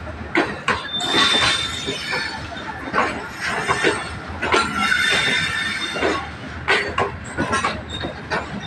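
Pakistan Railways passenger coaches rolling past, wheels knocking over rail joints at an uneven pace of about two a second over a steady rumble, with brief high wheel squeals now and then.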